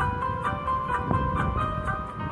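Karaoke backing track for a Hindi film song: a bright melody of short notes over a steady beat with light ticking percussion, with no harmonica playing.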